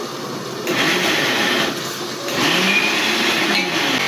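Ginger-garlic paste sizzling as it is spooned into hot oil and fried onions in a large aluminium pot, in two surges, the first about a second in and the second halfway through.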